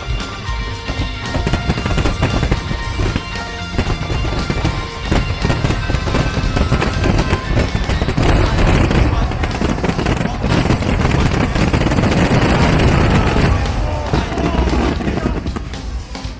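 A fireworks display with music playing: rapid crackles and bangs that thicken into a dense, loud barrage in the middle, then ease off near the end.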